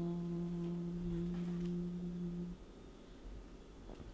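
A man's long, steady vocal 'ooh', held on one pitch and stopping about two and a half seconds in.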